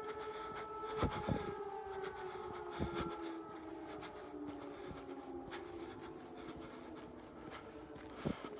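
An air-raid siren sounding, its pitch held and then slowly falling over several seconds. A few sharp knocks stand out, about a second in and again near three seconds.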